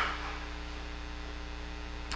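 Steady electrical mains hum with a faint hiss underneath, picked up by the recording system, with a brief soft noise right at the start.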